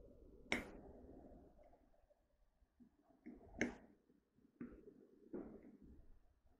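Faint, scattered clicks and taps, about five over a few seconds, from a metal fork on a plate while sausage is cut and eaten.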